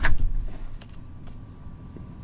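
A loud thump right at the start that dies away within about half a second, then faint, scattered light clicks and ticks.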